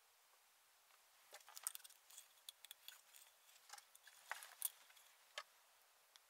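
Faint, scattered clicks and light rattles of small hard-plastic RC car parts being handled on a workbench, starting about a second in.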